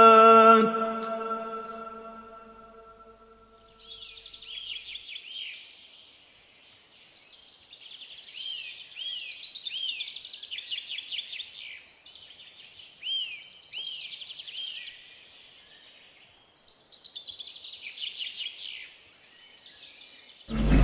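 A chanted voice fades out in the first two seconds. Then birdsong follows: bouts of high chirps and short arching whistles, with brief pauses between them.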